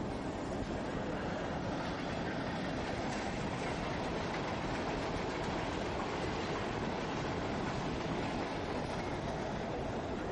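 Amusement-park train running steadily along its track, with a continuous, even rumble.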